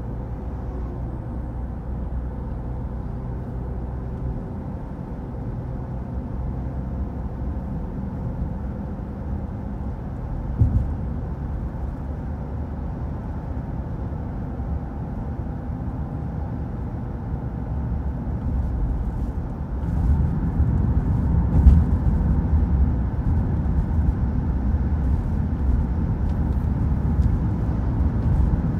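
Car interior noise while driving along a road: a steady low rumble of tyres and engine, with a short thump about a third of the way in. The rumble grows louder about two-thirds of the way through.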